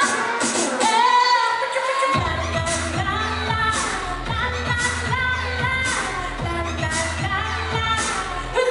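Live pop music: a female singer singing into a microphone over an amplified band. A deep bass line comes in about two seconds in.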